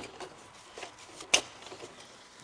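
Light handling noise as metal pins are fitted into an aluminium TV antenna boom, with a couple of faint ticks and one sharp click a little past the middle.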